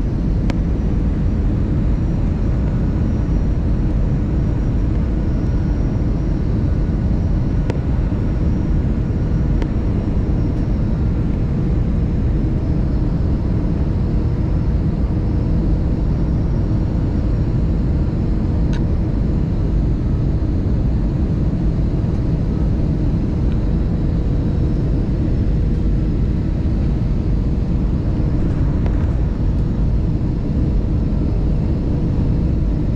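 Steady cabin noise of a jet airliner with wing-mounted turbofan engines, heard from a window seat as the plane descends on approach. A deep, even rumble carries a faint steady hum throughout.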